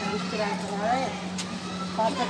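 Faint background voices of several people talking over a steady low mechanical hum, with a single sharp click about one and a half seconds in.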